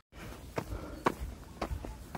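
Footsteps of trail-running shoes on an asphalt road, about two steps a second, climbing uphill, over a low rumble.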